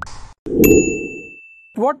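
Logo sting sound effect: a soft low thud and a bright chime struck together about half a second in. The chime's single high tone rings on for about a second before it stops.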